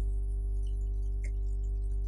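Steady electrical hum in the recording, a strong low drone with several constant tones above it, and a faint tick a little past a second in.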